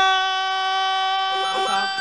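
A male lead singer holds one long, steady sung note on the last syllable of "embora", with the band's low end dropped out behind him.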